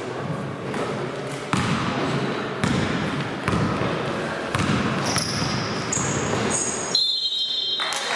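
Basketball being dribbled on a gym floor in a large echoing hall, with sneakers squeaking and players' voices. A referee's whistle sounds near the end, stopping play.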